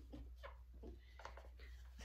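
Faint short strokes of a dry-erase marker writing on a whiteboard, several in a row, over a steady low room hum. The marker is not working well.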